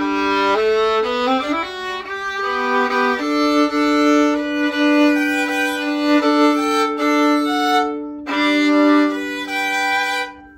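Solo violin being bowed: a run of quick notes, then long held notes, with a short break about eight seconds in. It is a test play of the freshly restrung violin after its varnish repair, and sound-wise it is good.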